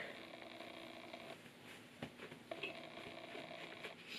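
Faint towel sounds: a terry towel pressed and patted against a wet face, a soft muffled rustle over a low steady room hum, with a couple of faint taps about halfway through.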